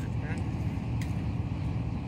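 Steady low rumble of outdoor background noise, with a couple of faint clicks.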